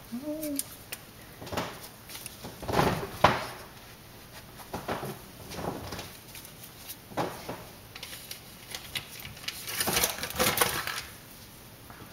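Scattered knocks and clinks of kitchen utensils and containers being handled, one every second or two, with a busier cluster near the end and a brief whine about half a second in.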